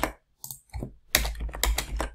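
Computer keyboard keystrokes while editing code: a few separate key presses, then a quick run of several in the second half.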